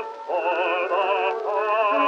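A 1917 acoustic-era recording of an Easter hymn: long held melody notes with wide vibrato over accompaniment. A new note begins about a third of a second in and another at about a second and a half. The sound is thin, with no deep bass and no top, as on early acoustic recordings.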